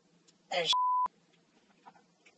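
A short censor bleep, one steady pure beep of about a third of a second, cuts off a man's exclamation just after he starts to say it and covers the swear word.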